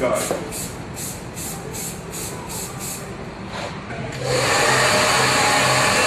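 A run of short hissing pulses, about two or three a second, then a handheld hair dryer comes on about four seconds in: a steady rush of air over a low motor hum.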